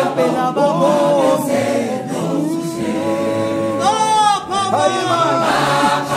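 South African gospel choir of mixed men's and women's voices singing in harmony, with long held chords. About four seconds in, voices sweep briefly upward.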